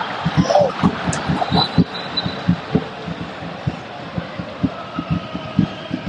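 Football stadium crowd noise with a fans' drum beating low thumps about three or four times a second.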